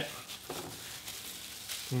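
Soft, wet squishing and crackling of hot cheese curd being kneaded and stretched in plastic-gloved hands over a glass bowl of whey.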